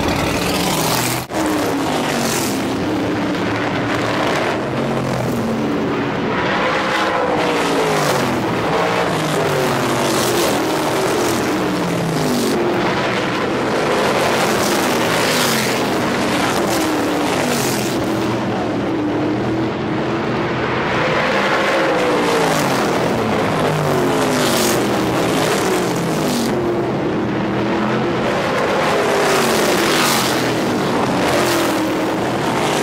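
Several supermodified race cars' V8 engines running around a paved oval, their pitch repeatedly rising and falling as the cars pass and lift and accelerate through the turns. There is a brief break just over a second in.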